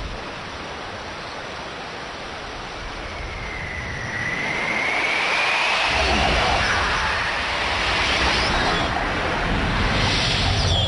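Film sound effects: a steady rushing hiss like flowing water, with a faint whistling whoosh gliding upward from about three to seven seconds in; a deeper rumble of water joins about six seconds in.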